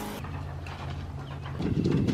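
A small motor running with a low, steady hum, joined about one and a half seconds in by a louder, rougher low rumble.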